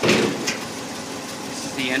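Steel hood of a 1969 International Harvester 1300 truck coming up to full open with a loud clunk, then a lighter click about half a second later, over the steady idle of the truck's engine.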